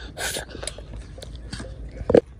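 A child eating braised pork belly, heard up close: a short breathy gasp through the open mouth about a quarter second in, then small wet mouth clicks as she chews.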